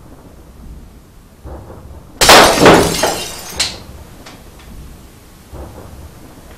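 A sudden loud crash about two seconds in, lasting about a second and a half before dying away: a dramatic film sound effect as the summoned spirit appears.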